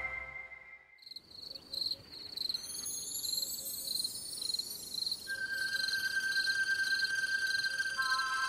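Night-time ambience of crickets chirping in a steady, even pulse, with soft rising sparkle sweeps above. About five seconds in, a held synth note comes in to open the song's music.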